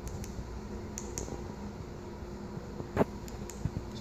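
Steady room hum with a few faint clicks of the buttons on a FLIR TG165 handheld thermal imager being pressed to open its mode menu.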